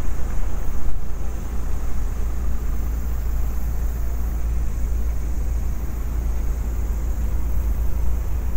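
Steady low rumble of city street traffic at a busy intersection, with no single distinct event standing out.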